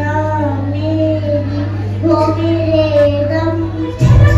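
A young girl singing solo into a microphone, a single voice on held, gliding notes, over a steady low hum.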